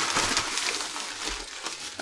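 Thin plastic shopping bag crinkling and rustling as it is handled and pulled open.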